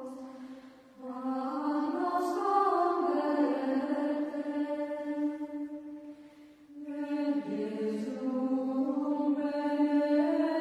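Gregorian chant: slow, sustained sung phrases on one melodic line. One phrase fades out and a new one begins about a second in, and another begins shortly before seven seconds.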